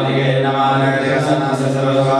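A man chanting Sanskrit mantras in a steady, drawn-out recitation with long held notes.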